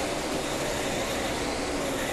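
A pack of NASCAR Nationwide Series stock cars at racing speed, their V8 engines blending into one steady, dense drone.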